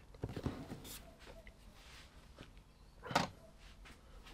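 Handling noise: a few light knocks and clicks in the first second, then one short, louder rustle-like knock about three seconds in.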